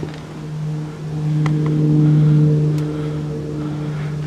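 A steady low machine hum, one pitch with overtones, swelling louder about a second in and easing back near three seconds, with a few light clicks.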